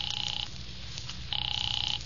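Telephone ringing on the line, a steady buzzing ring that stops about half a second in and rings again a little past a second later.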